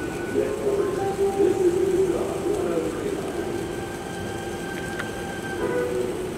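A steady, even mechanical drone with faint higher tones over it, engine-like, and a single faint click about five seconds in.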